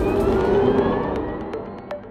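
Animated logo intro sound effect: a loud spinning-wheel whoosh with pitches rising like a revving motor, fading away, then a sharp hit just before the end as the logo chime's tones ring on.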